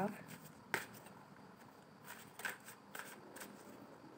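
A deck of fortune-telling cards being shuffled by hand, the cards slipping against each other with a few soft snaps, the sharpest about three-quarters of a second in.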